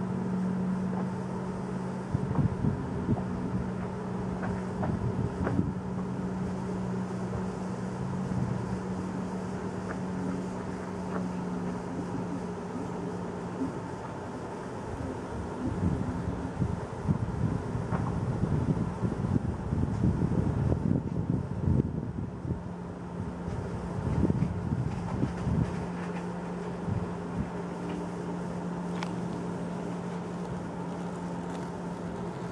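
A steady low mechanical hum runs through, with irregular low rumbling and crackle that gets stronger past the middle, typical of wind or handling on the microphone.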